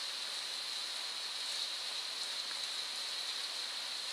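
Steady hiss of a microphone's noise floor, even and unchanging, with a brighter high band in it and no other clear sound.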